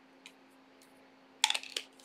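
A few faint clicks, then a short loud clatter of sharp clicks about one and a half seconds in, over a faint steady hum.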